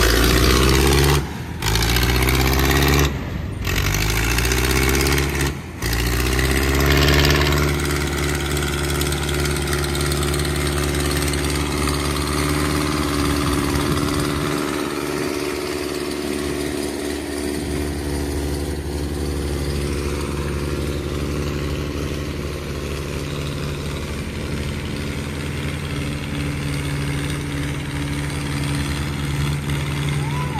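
Diesel farm tractor engines working under load to pull a trailer stuck in mud. In the first few seconds the engine rises in pitch in short revving pushes, broken by brief cuts; after that an engine runs steadily and hard.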